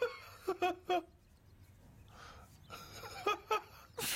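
A man laughing in short bursts: three quick bursts within the first second, then two more a little past three seconds in.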